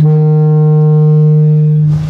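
A loud, steady horn-like tone, one unwavering note held for about two seconds and cutting off near the end.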